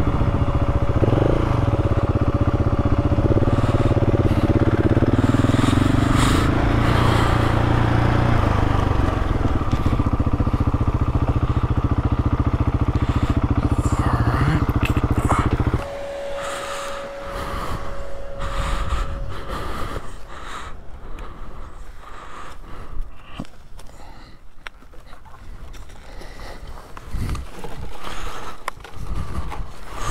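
Dual-sport motorcycle engine running steadily at low speed on a dirt track, then shut off abruptly about halfway through. After it stops there are scattered clicks, knocks and rustling as the rider deals with a wire fence gate.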